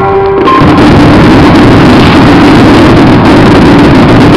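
Music for about the first half-second, then a dense, continuous, very loud din of many fireworks shells bursting at once in a barrage.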